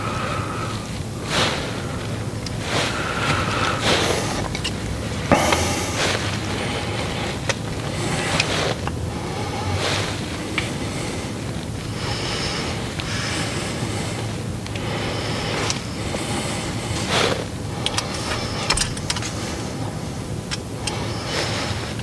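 Steady low vehicle rumble, with irregular rustles and soft knocks over it.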